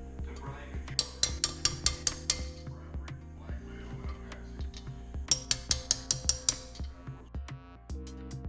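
Two quick runs of about seven light hammer taps on a socket held against the valve stem tips of a Mazda Miata cylinder head, metal on metal with a short ring, one run about a second in and one past the middle. The taps help the freshly installed valve keepers seat. Background music with a steady beat runs under it.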